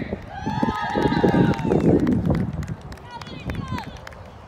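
A person's high voice calling out in a long wordless shout that rises and falls, then a shorter call near the end.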